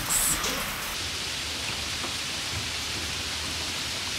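Heavy rain falling steadily on the garden foliage and surrounding surfaces: an even, unbroken hiss.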